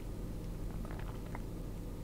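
Quiet room tone with a low steady hum, and a few faint small ticks about halfway through.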